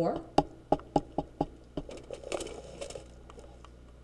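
Handling noise as the dissection setup is moved: about six light, sharp clicks in under two seconds, then a soft rustle.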